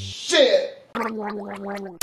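Voices: a short vocal cry that bends up and down in pitch, then a drawn-out spoken "Who...".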